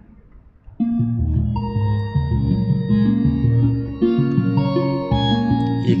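Sonified DNA sequence of the myrtle rust genome, with each nucleotide base turned into a musical note, playing as layered electronic notes that step from pitch to pitch. It starts about a second in.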